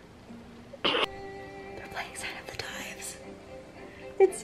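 A TV drama's soundtrack: held music notes under quiet, whispery dialogue, with a short breathy burst about a second in.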